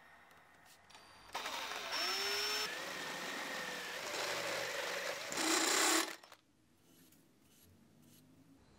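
Makita cordless drill with a stepped drill bit cutting a hole in a thin-walled square steel tube: the motor whines and rises in pitch as it spins up, with a harsh cutting noise. It starts just over a second in, runs about five seconds, is loudest near the end and stops suddenly.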